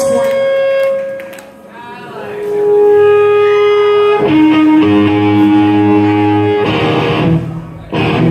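Electric guitar through an amp ringing out long sustained notes and chords, shifting to a lower chord about halfway through. A brief noisy burst comes near the end.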